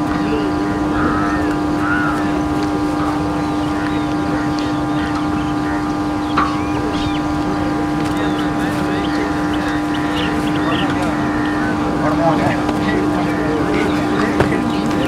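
A steady, unchanging hum with one strong low pitch and several fainter higher ones, with faint voices over it.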